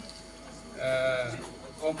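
A man's drawn-out hesitation sound, a held "ehh" of about half a second, spoken into a handheld microphone between greetings, followed by the start of a word.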